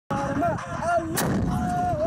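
A single shot from a tripod-mounted recoilless rifle about a second in: one sharp blast followed by a low rumbling echo.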